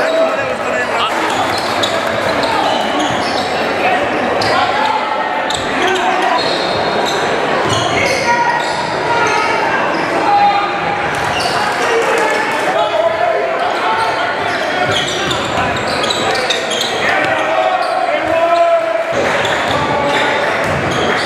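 Live game sound in a gym: a basketball bouncing on a hardwood court, with repeated short knocks through the whole stretch, over indistinct voices of players and spectators echoing in the hall.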